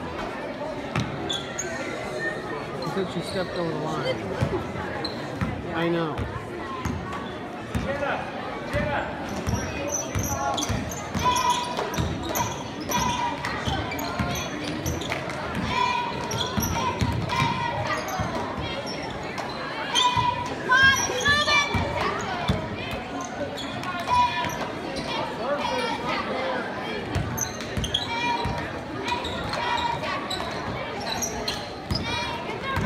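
A basketball bouncing on a hardwood gym floor during play, the strikes repeating throughout, with voices shouting in the gym.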